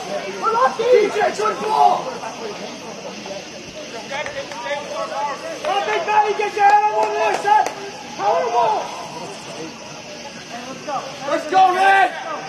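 Men's voices shouting calls across a soccer field in several short spells, with quieter gaps between.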